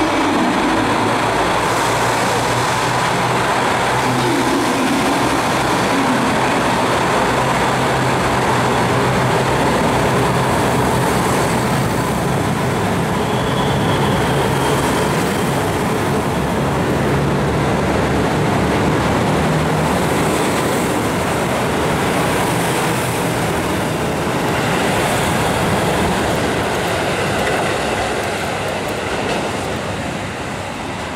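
JR Hokkaido North Rainbow Express, a KiHa 183 series diesel railcar set, pulling slowly out of the station and past on the platform track, its diesel engines running steadily under a rolling rumble of wheels on rail. The sound eases near the end.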